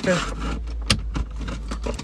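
Plastic trim panel around a car's gear selector being pried up with a plastic trim tool: scraping and rustling of plastic, with a sharp click just under a second in and a weaker one shortly after.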